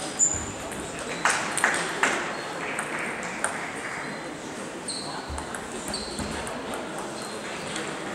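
Table tennis ball clicking off bats and table in a rally, a quick series of sharp clicks in the first two seconds, then another click later. Voices chatter in the background.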